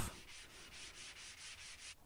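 Fine sandpaper rubbed by hand over a torch-burnt wooden board, in faint repeated strokes.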